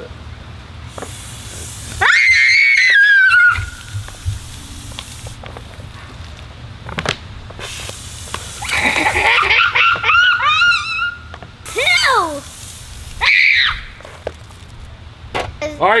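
High-pitched screams and squeals: one long shriek about two seconds in, several overlapping squeals around the middle, and two more short shrieks near the end.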